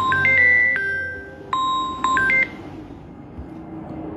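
Electronic phone ringtone: a held beep with a few quick higher notes over it, played twice about a second and a half apart.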